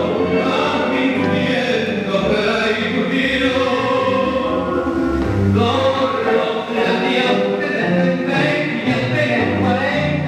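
Argentine tango music playing continuously, with singing over sustained instrumental chords and a bass line.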